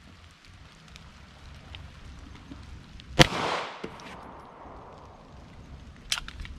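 A single 9 mm pistol shot, a 115-grain full-metal-jacket round, about three seconds in, with an echo dying away over about a second and a small click just after.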